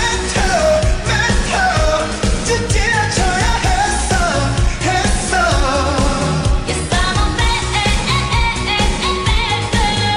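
Korean pop song: a sung chorus line over a pop backing track with a steady, heavy bass beat.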